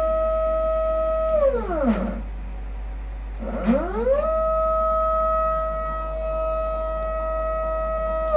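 CNC router stepper motor whining as it runs an axis move. The steady tone sweeps down and stops about two seconds in as the motor decelerates, then after a short pause rises again as it accelerates and holds steady. A low mains hum runs underneath.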